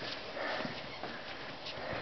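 A farm animal sniffing softly close to the microphone, with faint rustling.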